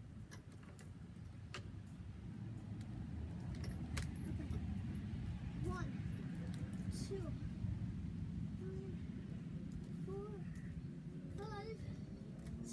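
Metal swing chains clinking and jangling in scattered sharp clicks as a child climbs onto and hangs from a chain-hung swing seat.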